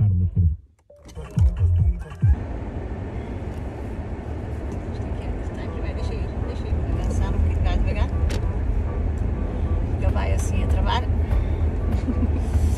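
Car interior noise: a steady low rumble of the engine and road heard from inside the cabin, starting about two seconds in and growing slightly louder as the car moves.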